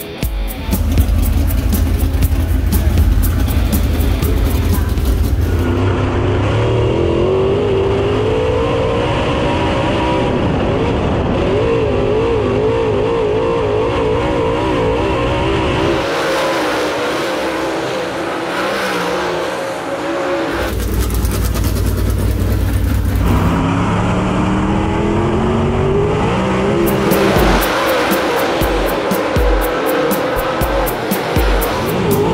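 Dirt Super Late Model race cars' V8 engines running hard around a dirt oval, the engine note rising and falling as the cars accelerate and pass. Near the end there are rising glides in pitch as the cars come back on the throttle.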